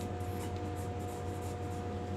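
Pencil drawing on paper: a few short strokes of graphite on the sheet as a line is sketched, over a steady low hum.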